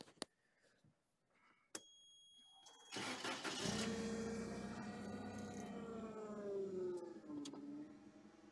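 Toyota 7FGCU18 propane forklift's four-cylinder engine being started: a few clicks and a steady high-pitched tone, then a short crank about three seconds in before the engine catches. It runs at a fast idle whose pitch drops and settles to a lower idle near the end.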